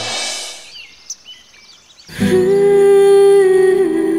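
A music cue ends in a rushing swell that fades out, leaving a brief quiet stretch with a few bird chirps. About two seconds in, a new background score begins: a slow, sustained melody with held, gliding notes.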